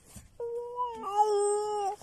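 A toddler's long, high-pitched vocal call, held nearly level for about a second and a half, dropping slightly in pitch and getting louder partway through.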